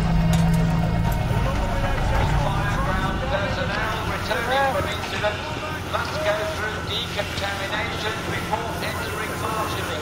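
Several people's voices talking over one another, indistinct, above a low vehicle engine rumble that fades back after the first few seconds.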